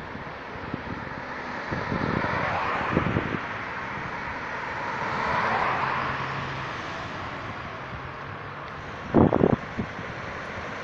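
Road traffic passing: car tyres and engines hiss by on the road, swelling as each vehicle passes. A few brief loud low buffets come near the end.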